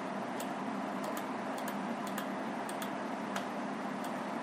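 Several faint computer mouse clicks at uneven spacing, a few each second, over a steady hiss of room and microphone noise, as the Find Next button is clicked through the search results.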